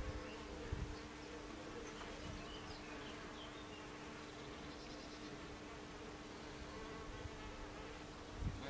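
Bees buzzing in a steady, even hum.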